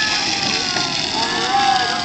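Battery-powered ride-on toy car driving along a paved path, its electric motor and plastic gearbox making a steady whine that slides slowly in pitch, with voices in the background.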